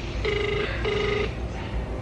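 Ringback tone of an outgoing mobile phone call, heard through the phone's speaker: two short rings close together near the start, then a pause. The call rings unanswered.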